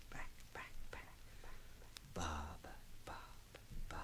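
A man whispering short repeated syllables, quietly, about two or three a second, with one louder, breathier syllable about halfway through.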